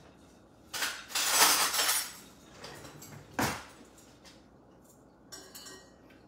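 Metal kitchenware being handled at the stove: a rattling, scraping clatter lasting about a second and a half, then a single sharp clank a couple of seconds later.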